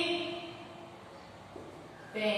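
The end of a woman's long, drawn-out vocal sound, fading out in the first half second or so, followed by faint room noise.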